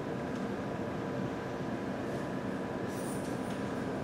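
Steady room hum and background noise, like a room's air handling, with a few faint rustles about two to three seconds in.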